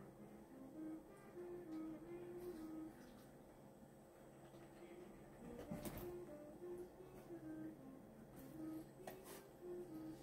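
Faint background music: a simple melody of held notes stepping up and down, with a few brief soft clicks.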